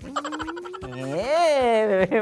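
A man's voice making a drawn-out, croaky comic vocal sound: a rapidly pulsing, rattly tone on one steady pitch, then a long wavering note that rises and falls in pitch.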